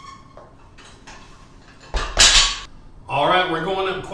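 A plate-loaded EZ curl bar set down on the floor: one loud metal clank with a short ringing tail about two seconds in, after which a man's voice is heard.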